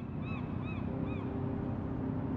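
Gull giving a quick series of short arched cries, about two a second, over a steady low background rumble.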